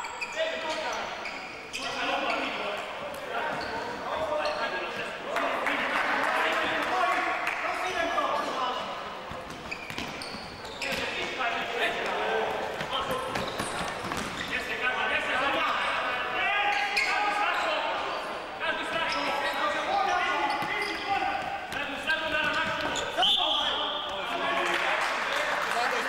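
Futsal ball being kicked and bouncing on a hard indoor court, the knocks echoing in a large sports hall, with talking going on throughout.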